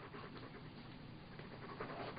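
Faint panting of a dog, growing a little louder toward the end.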